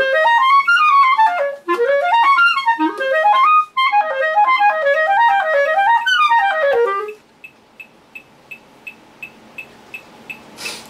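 Clarinet playing fast up-and-down scale runs in triplets, breaking off about seven seconds in. A steady ticking, about twice a second, carries on after the playing stops.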